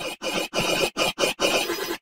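Heavily distorted, effect-processed soundtrack. Harsh scraping noise with a shrill squealing edge cuts in and out in choppy bursts, about three a second.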